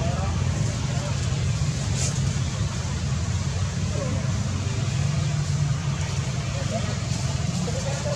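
Steady low rumble and hiss of outdoor background noise, with faint distant voices now and then.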